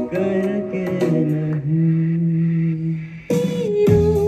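A male vocalist sings an Indian song into a microphone over backing music, holding one long low note. About three seconds in, a higher voice takes over the melody over a steady low bass line.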